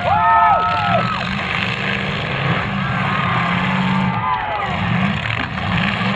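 Demolition derby cars' engines running at high revs, with the pitch rising and falling about a second in and again around four seconds in as the cars push and maneuver.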